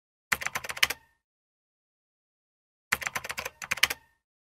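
Typing sound effect: two quick runs of keystroke clicks, each about a second long, the first just after the start and the second about three seconds in.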